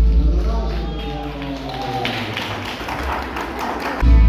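A live string band's music (guitars and violin) dies away just at the start, leaving voices talking and scattered hand claps and taps, thickest in the second half.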